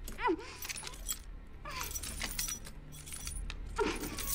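A woman's short cries, one just after the start and one near the end, over dense metallic rattling and clattering.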